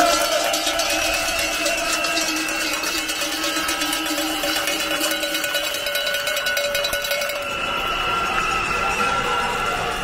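Many cowbells rung together by a protesting crowd, a steady clanging din of overlapping bell tones that thins out a little after about seven and a half seconds.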